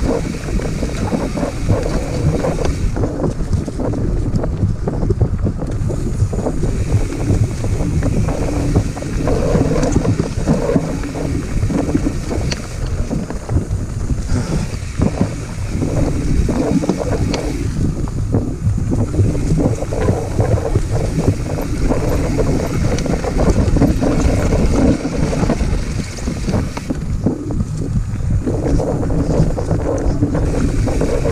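Wind rumbling on an action-camera microphone as a mountain bike rides singletrack, with a constant clatter of short knocks and rattles from the bike going over the rough dirt trail.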